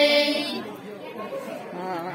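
A group of women's voices holding the last note of a devotional bhajan line, which ends about half a second in. Soft, overlapping chatter follows in the pause before the next line.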